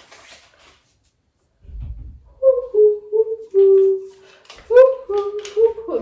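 A girl humming a short wordless tune in a few held notes, beginning about two and a half seconds in, after a brief low rumble.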